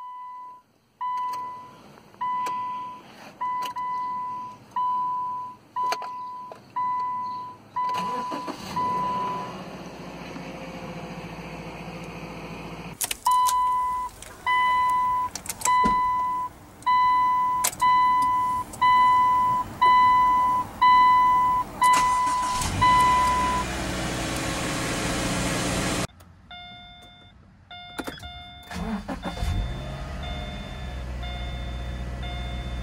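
Subaru Outback key-in-ignition reminder chime: a single beep repeating about every three-quarters of a second, about a dozen times. After a stretch of rustling and clicks, a second, louder run of the same beep follows. Near the end a different chime begins, with higher and lower tones.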